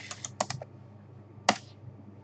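Keystrokes on a computer keyboard: a quick run of key presses, then one louder key stroke about a second and a half in.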